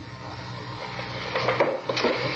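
Room noise in an old recording: a rustling, shuffling sound that grows louder over the second half, with faint murmured voices, over a steady low hum.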